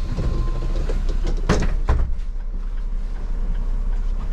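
City bus engine idling with a steady low rumble inside the cabin, with two sharp knocks about a second and a half in.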